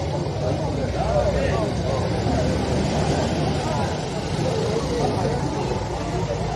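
Voices of people talking among a crowd, over a steady low rumble.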